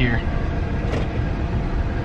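Road and engine noise heard inside the cabin of a 2013 Dodge Durango while it is driven: a steady low noise with no distinct events.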